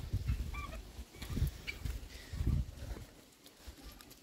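Faint, brief calls of farmyard poultry, with low rumbles of wind on the microphone.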